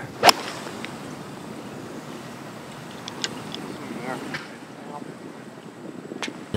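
A golf iron striking the ball: one sharp click about a third of a second in, followed by a steady outdoor hiss of wind and course ambience.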